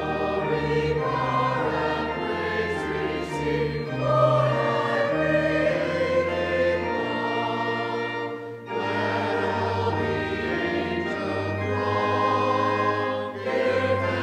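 A church choir and congregation singing a hymn together, accompanied by organ, with a short break between lines about eight and a half seconds in.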